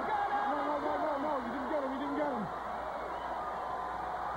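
A man's voice speaking excitedly, TV wrestling commentary, over steady arena crowd noise.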